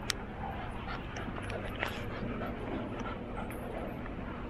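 Small dogs playing, making brief, soft vocal sounds over a steady low background, with a sharp click just after the start.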